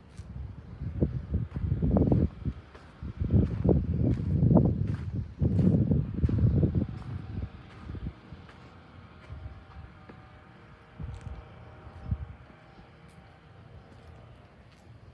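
Wind buffeting the phone's microphone: a low, gusty rumble that swells and drops for about six seconds from a second in, then dies down to a faint hiss with a few light ticks.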